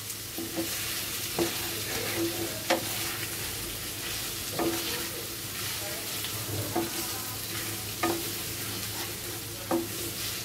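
Spiced slices of beef sizzling in a nonstick frying pan while a wooden spatula stirs them, with a sharp scrape or tap of the spatula against the pan every second or two.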